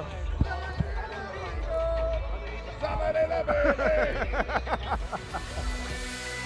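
Men laughing and calling out, with a quick run of laughter in the middle, over background music and a low steady crowd rumble.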